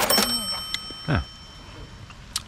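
A single bright bell-like ding: one sharp strike that rings on in several clear, steady high tones for about a second and a half before fading.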